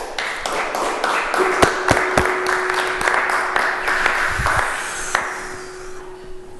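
Applause: many hands clapping, starting suddenly and dying away after about five seconds.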